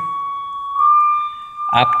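A single held pipe-organ note from one stop on the Great, sounding steadily as a pure, flute-like tone. About three-quarters of a second in, it steps up a semitone as the transposer moves from +1 to +2.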